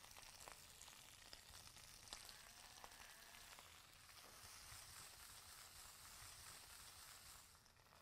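Kangkong (water spinach) leaves sizzling faintly in a little hot oil in a frying pan as they wilt, with a few light ticks.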